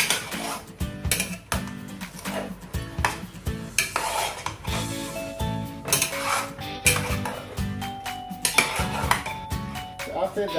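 Metal ladle stirring chicken pieces in a nonstick pot, knocking and scraping against the pot with frequent clinks. Background music plays underneath.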